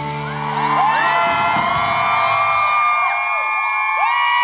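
The band's last chord ringing out and fading, then a concert crowd cheering with many high-pitched screams that swell from about a second in.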